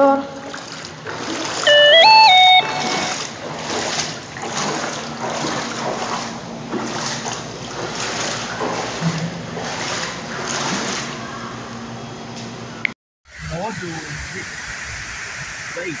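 Shallow floodwater splashing and sloshing as someone wades across a flooded dining-hall floor. About two seconds in comes a short, loud electronic tone that steps up and then down in pitch. Near the end the sound cuts out briefly and gives way to the steady rush of floodwater running down a street.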